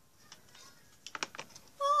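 A quick run of sharp clicks and taps, like a small plastic object being handled. Just before the end, a child's loud, held "oh" cry at one steady pitch starts.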